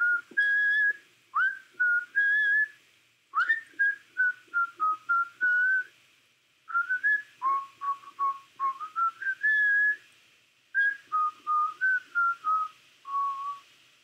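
Whistling of a short melody in four phrases of quick notes, some notes sliding up into pitch, the last phrase ending on a longer, lower held note.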